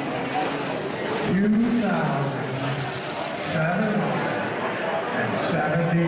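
Indistinct voices of people talking in a large room, with a man's voice rising and falling a few times.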